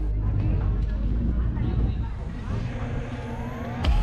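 Open-air ambience at a baseball field: a steady rushing noise with a passing vehicle and distant voices. A sharp knock comes just before the end.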